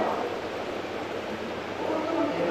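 Steady room noise in a large hall, an even hiss with a low hum under it, in a pause between spoken phrases.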